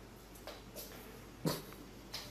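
A few brief, sharp sounds from a pet animal, the loudest about one and a half seconds in.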